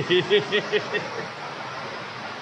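A person laughing: a quick run of short 'ha' pulses that fades out about a second in, leaving a steady background hiss.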